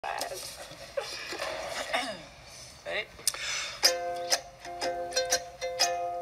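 Laughter and a voice, then about four seconds in, a ukulele strummed in quick chords.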